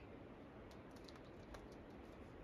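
Near silence with a short run of faint clicks and scuffs in the middle: a climber's shoes and hands shifting on granite.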